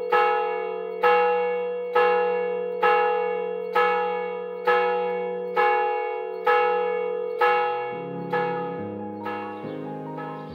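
A single church bell tolling, struck about once a second, each stroke ringing out and decaying before the next; the strokes grow fainter near the end as instrumental music comes in.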